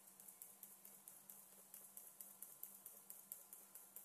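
Near silence: room tone with a faint low steady hum and faint irregular ticks, several a second.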